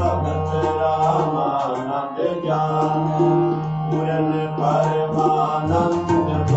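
Sikh kirtan: a harmonium sounding sustained chords, with tabla strokes and a sung devotional vocal line.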